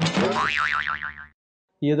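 A cartoon 'boing' comedy sound effect: a wobbling, warbling tone lasting just over a second, then breaking off.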